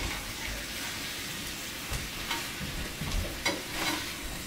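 Chopped steak sizzling in a frying pan on a gas burner while a spatula stirs and breaks it up, with several short scrapes and taps of the utensil against the pan in the last two seconds.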